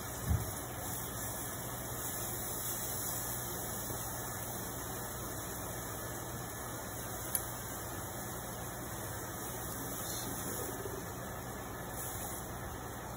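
Sea scallops searing in a hot nonstick pan, a steady sizzle, over the steady hum of a range hood fan. A soft thump comes just after the start and a single sharp click about seven seconds in.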